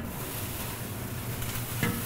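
Creamy shrimp sauce sizzling in a steel sauté pan on a gas burner: a steady hiss, over a low kitchen hum.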